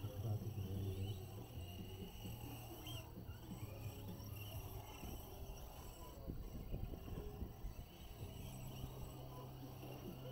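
Radio-controlled short course trucks racing on a dirt track, their motors a faint whine that rises and falls as they accelerate and brake, over a low steady hum.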